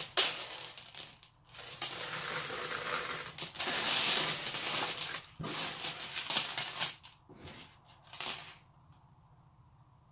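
Strands of faux pearl beads rattling and clicking against each other and the table as they are pulled out and handled. It is a dense clatter for about seven seconds, followed by two short rattles.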